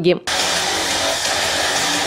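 Audience applause in a hall: dense, even clapping that starts abruptly just after the start and holds at a steady level.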